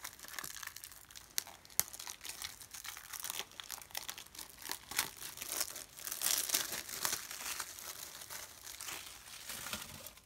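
Plastic shrink wrap being torn and peeled off a Blu-ray case: a continuous crinkling with sharp crackles and snaps, loudest about six to seven seconds in.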